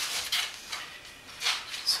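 Rustling and short scrapes of paper cord being handled and pulled taut while weaving a chair seat, with a louder scrape about a second and a half in.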